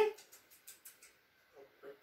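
Mostly quiet small room with a few faint ticks of handling noise in the first second; a woman's sentence ends at the start and her voice starts again near the end.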